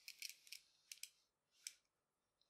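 Near silence with a handful of faint light ticks and rustles from hands handling paracord and a steel tape measure.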